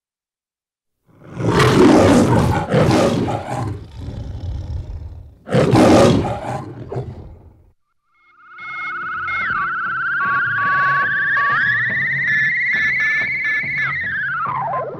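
The MGM studio lion roaring twice, each roar loud and lasting a couple of seconds. After a brief gap, warbling electronic tones begin, one gliding slowly upward.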